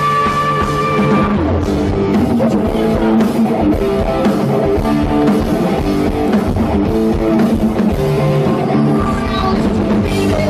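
Hard rock band playing live without vocals: electric guitar over a drum kit. A high held note in about the first second gives way to a repeated riff of lower notes.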